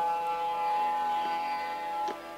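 Sarangi holding one long bowed note in raag Kaunsi Kanada, with no tabla strokes under it; the tabla comes back in just after.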